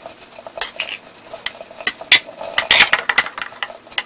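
Metal spoon scraping and clinking against a porcelain bowl and ceramic cups while scooping a saucy chicken mixture, in irregular taps and short scrapes.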